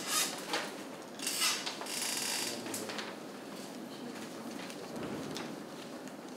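Papers and small objects being handled on a desk: a few short bursts of rustling and scraping in the first three seconds, the loudest about a second and a half to two and a half seconds in, then quieter room noise.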